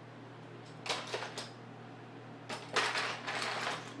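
Loose Lego bricks clattering against each other in a plastic storage bin as a hand rummages through them, in two bursts: one about a second in, and a longer one from about two and a half seconds to near the end.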